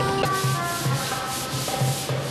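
Hand-scrubbing of wet stone steps: a steady hiss of back-and-forth scrubbing strokes on stone, with music quieter underneath.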